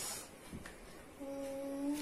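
A person humming one steady, held 'mmm' through the second half, a thoughtful hum while weighing an answer.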